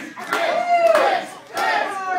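A small wrestling crowd shouting and yelling at the wrestlers, with two loud drawn-out calls, the first held long.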